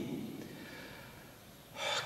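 A man's quick in-breath near the end, taken just before he speaks again, after a short lull in which his voice dies away to faint room tone.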